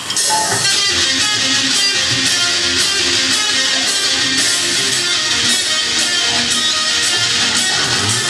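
A heavy metal band playing live as the next song gets under way: electric guitars riffing over bass guitar with a steady beat, loud and dense throughout.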